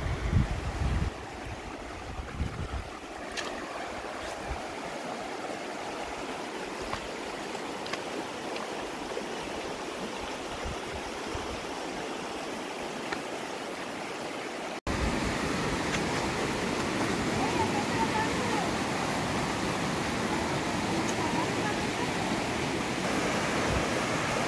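Steady rush of a mountain river, the East Fork of the San Gabriel River, running over rocks. A few low thumps come in the first couple of seconds. The water gets louder after a sudden cut about fifteen seconds in.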